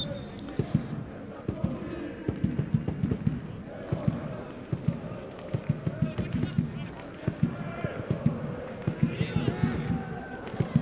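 Football stadium sound: a steady run of low thumps, several a second, throughout, with faint voices shouting.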